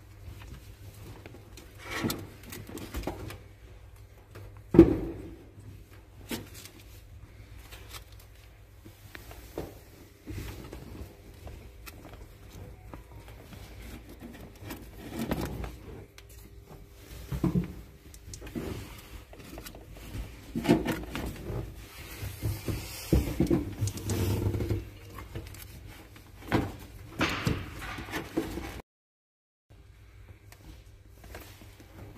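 Irregular knocks, scrapes and rustling from objects being handled by hand, over a steady low hum; the sound cuts out briefly near the end.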